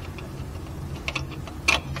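A few light clicks and taps from a digital angle finder being moved against the steel driveshaft yoke, the sharpest near the end, over a low steady hum.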